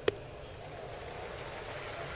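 A single sharp pop just after the start, the pitched baseball smacking into the catcher's mitt for a strike, over the steady murmur of a ballpark crowd.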